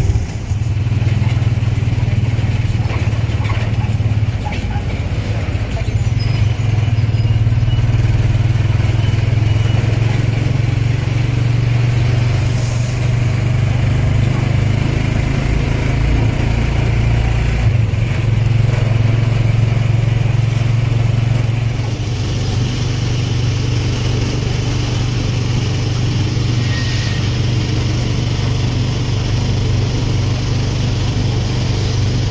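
Motorcycle engine of a motorized tricycle running steadily on the move, heard from inside the sidecar with road and traffic noise around it. Its low drone shifts a couple of times in the second half as it changes speed.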